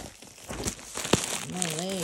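Plastic poly mailer bag crinkling and rustling as it is handled and pulled open, with a couple of sharper crackles in the middle.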